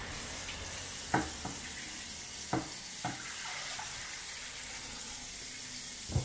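Kitchen tap running steadily into a glass bowl of raw chicken fillets held under it in the sink, with a few light knocks about one, two and a half and three seconds in.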